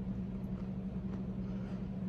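Faint biting and chewing of a sprinkle-edged peppermint pinwheel cookie, a few soft crunches, over a steady low hum.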